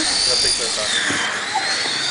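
High-pitched whine of an electric radio-controlled racing car's motor. The pitch rises and falls as the car speeds up and slows down around the track.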